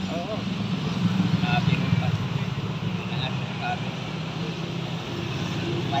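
A motorcycle engine running steadily close by, its hum easing off about five seconds in, with faint street noise.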